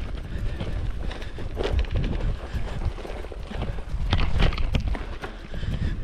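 Kross Esker 6.0 gravel bike riding over a bumpy grass track: a steady low rumble with irregular knocks and rattles as the bike jolts over the bumps.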